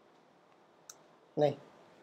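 A single faint click about a second in, as the page in the browser is reloaded, followed by a short spoken word.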